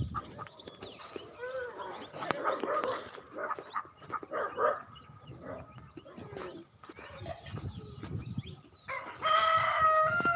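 Chickens clucking and calling, with a rooster crowing loudly about nine seconds in.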